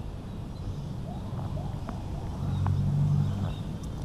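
A motor engine running somewhere off-camera: a steady low hum that grows louder from a little past halfway through.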